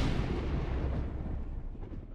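Thunderclap sound effect: a sharp crack right at the start, then a deep rumble that slowly dies away.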